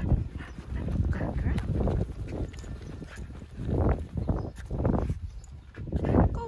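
Footsteps and movement while walking on a concrete sidewalk with a dog on a leash: a run of irregular soft thumps and rustles, a few a second.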